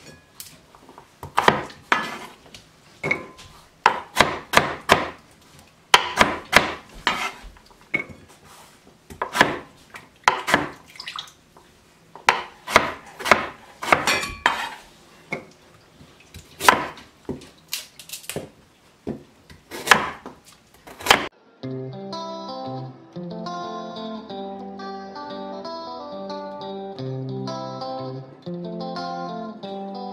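Chef's knife chopping root parsley on a wooden cutting board, in irregular runs of quick strokes. About two-thirds of the way through the chopping cuts off suddenly and plucked-guitar background music takes over.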